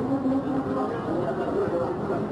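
Busy street hubbub: voices, including a drawn-out call at the start, over steady street noise.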